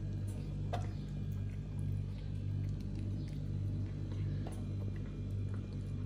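A cat eating wet food from a plastic bowl: small, scattered chewing and licking clicks over a steady low hum.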